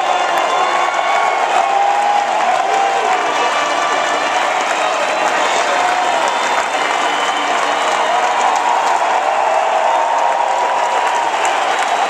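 A large stadium crowd applauding and cheering steadily at the close of the national anthem.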